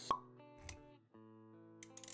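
Animated-intro music sting with sound effects: a sharp plop just after it starts and a softer thump about half a second later, over held synth tones, with light clicks near the end.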